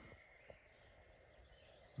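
Near silence: faint outdoor background hiss, with one small tick about half a second in.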